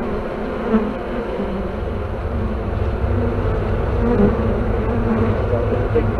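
Honeybees buzzing close up as they crowd onto the perforated metal grid of a pollen trap fitted over the hive entrance. A steady buzz that grows a little louder after the first couple of seconds.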